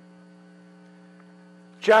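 A faint, steady electrical hum of several stacked tones on a live telephone line, in a pause between speakers. A man's voice comes in near the end.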